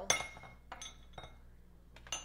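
A metal paintball barrel knocks against something hard and rings briefly, followed by two lighter knocks as it is handled.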